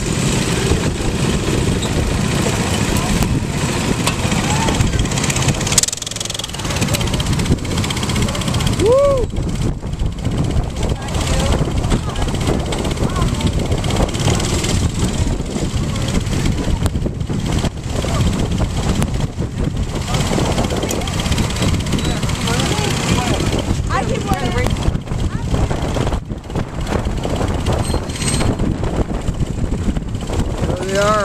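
Several go-kart engines running at low speed as the karts pull into the pits and park, with people's voices over them.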